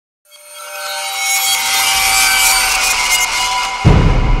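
Trailer-style riser: a hissy swell with held high tones builds over about three seconds, then a deep boom hits near the end as the title card appears.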